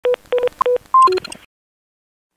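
A quick run of short electronic beeps, mostly at one pitch with a couple an octave higher, ending in a brief jumble of higher bleeps that cuts off about a second and a half in.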